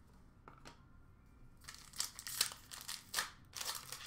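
Trading cards and their packaging being handled by hand: a run of crinkling and rustling that starts a little under two seconds in.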